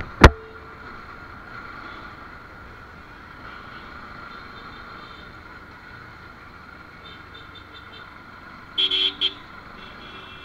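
Motorcycle ride through city traffic, heard from a helmet-mounted camera: a steady bed of engine, road and wind noise, broken by a single sharp knock just after the start. About nine seconds in come three or four short horn toots.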